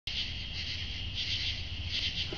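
Crickets chirring steadily in a high band that pulses gently, over a low rumble.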